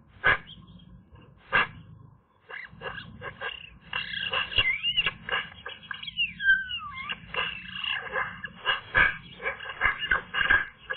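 Eurasian magpie in the nest making all kinds of sounds: two sharp calls near the start, then, after a short pause, a continuous run of varied chattering and squeaky notes mixed with a few whistled glides that swoop up and down in pitch.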